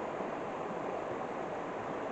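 A small river running fast and full over rocks and snags after snow and rain, a steady rushing of water.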